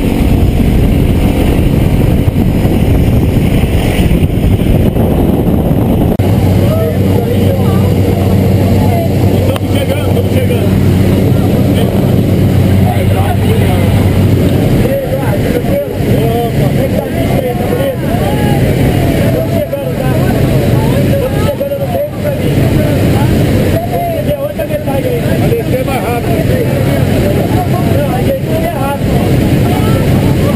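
Steady loud drone of a light jump plane's propeller engine, heard from the open door and then inside the cabin, with voices talking over it.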